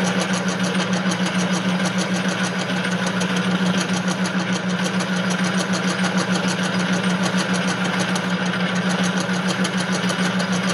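Metal lathe running, turning an aluminium pulley blank between centers with a carbide insert cutting: a steady motor and gear hum with a fast, even ticking over it.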